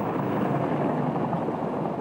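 Hägglunds articulated tracked all-terrain carrier driving away on a gravel road, its engine and tracks making a steady running noise.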